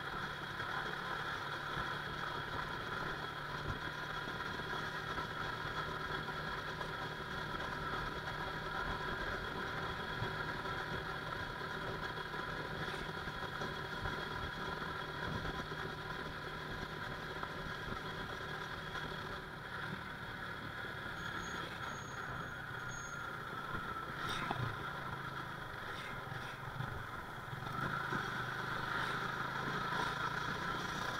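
Yamaha motorcycle engine running steadily under the rider while cruising along a road, with road and wind noise. The engine note shifts and gets louder near the end.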